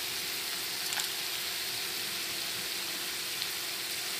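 Onion paste frying in oil in a non-stick kadhai: a steady, even sizzle, with whole spices just tipped in. There is one faint click about a second in.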